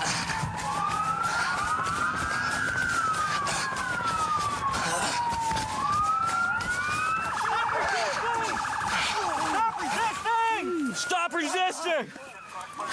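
Police car sirens wailing, several at once, their pitches sliding up and down over one another. Near the end they switch to a fast warbling yelp and then quick short chirps.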